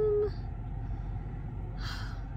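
A held voice note trails off just after the start, leaving a steady low rumble inside a car. Near the end comes one short, sharp breath intake.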